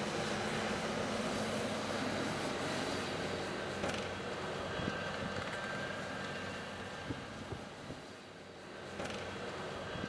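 Tractor engine running steadily while the tractor pulls a peat harvesting wagon across a peat field, a continuous machine hum that eases slightly near the end before picking up again.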